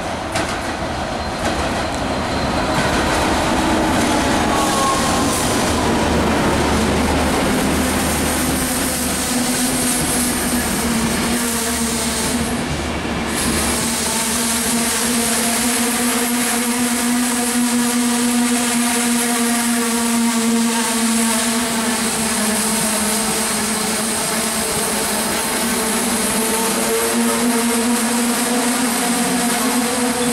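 Enterprise passenger train, a 201 class diesel locomotive and its coaches, running past the platform: a loud steady drone with the rumble of wheels on the rails. A tone falls in pitch over the first few seconds as the locomotive goes by, then a steady hum holds while the coaches pass.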